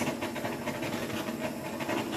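Handheld torch flame running with a steady hiss, played over wet acrylic paint to bring up small cells.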